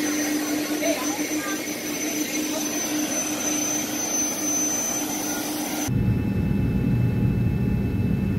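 Jet airliner engines running on the apron, a steady noise with a held whine. About six seconds in it cuts to the deep, steady rumble of the cabin in flight.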